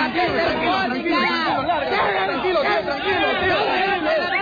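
Several voices talking over one another at once, a jumble of overlapping chatter with no single clear speaker.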